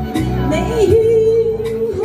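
A woman singing into a microphone over a recorded backing track, dipping and then holding one long note for about a second.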